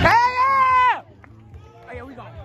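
One loud, high voice holding a single note for about a second, which cuts off abruptly. It is followed by faint scattered voices of children outdoors.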